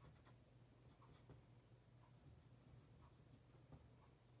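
Faint scratching of an oil pastel stroking across construction paper as a drawing is outlined, over a low steady hum.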